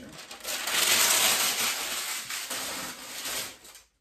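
A sheet of butcher paper rustling and crinkling loudly as it is handled and crumpled up. The sound starts about half a second in, goes on for about three seconds and fades out near the end.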